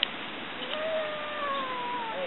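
A wild turkey making one long, drawn-out call that slowly falls in pitch.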